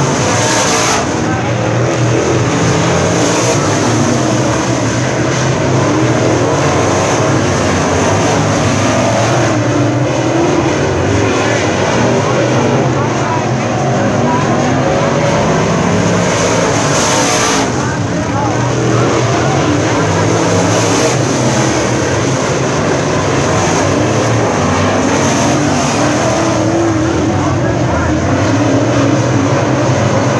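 Dirt late model race cars running laps around a dirt oval. Several engines blend into one loud, continuous noise that rises and falls in pitch as the cars pass.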